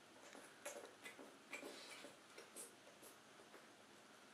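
Faint, irregular wet clicks and smacks of a bear cub chewing a curd pastry off the floor.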